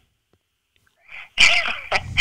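About a second of silence, then a person's sudden loud, breathy burst of air that hisses on past the end.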